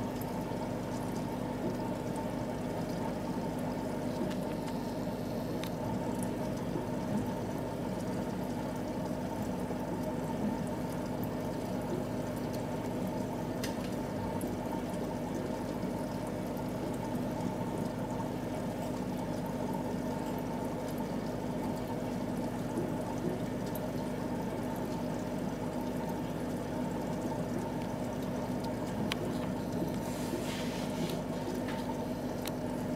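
Aquarium water running steadily: water pouring and splashing at the surface and air bubbling from sponge filters, with a constant low hum underneath.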